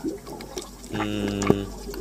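A man's voice holding a level, drawn-out "hmm" about a second in, a hesitation while he tries to recall a name.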